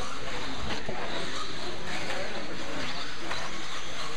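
Electric 1/10-scale 2WD RC buggies running on an indoor dirt track: a steady wash of motor and tyre noise, with faint background voices.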